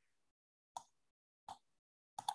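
Near silence broken by two faint computer mouse clicks, about three-quarters of a second apart.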